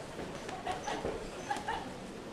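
Boxing gloves landing in a quick exchange of punches: about six sharp smacks spread over two seconds, with short, high, yelp-like voice sounds among them.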